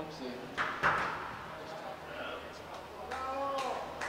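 A racquetball bounced twice on the court floor before a serve, two sharp knocks about half a second apart near the start, with quiet voices talking around them.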